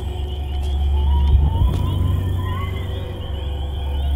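Eerie horror-film background score: a deep, steady drone under thin, sustained high tones, a few of which waver and glide upward briefly in the middle.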